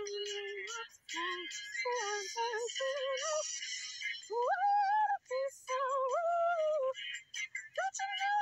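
A woman's voice singing wordless vocal warm-up exercises, played back from a phone recording. It holds a note, sings a run of short stepping notes, then slides up to a higher held note and steps back down.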